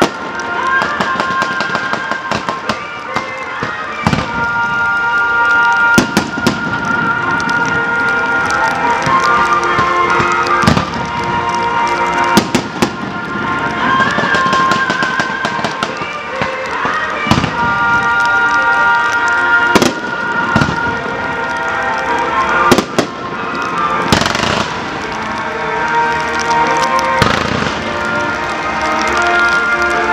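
Aerial fireworks launching and bursting, a series of sharp bangs every two or three seconds, with music playing throughout.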